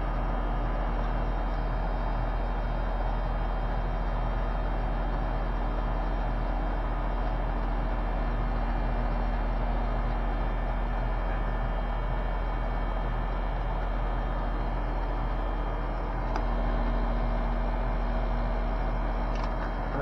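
Central air conditioner condensing unit running steadily: compressor hum and condenser fan. About four seconds before the end a lower tone joins and the hum gets slightly louder.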